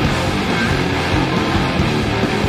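A rock band playing loud live: electric guitars, bass and drums in a full, driving passage.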